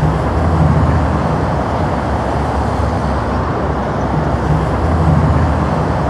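Freeway traffic noise: a steady roar of passing vehicles, with a deeper rumble that swells twice as heavier vehicles go by.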